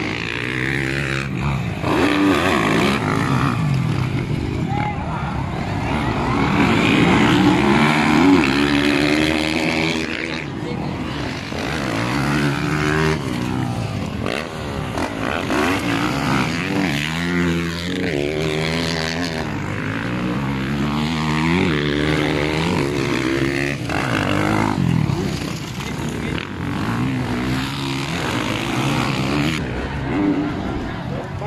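Several motocross dirt-bike engines revving hard as the bikes race round the track, their pitch rising and falling again and again as riders open and close the throttle.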